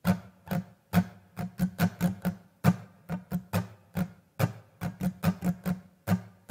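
Steel-string acoustic guitar strummed in a repeating pop-rock strumming pattern: groups of quick strokes of varying loudness that come round about every second and three-quarters.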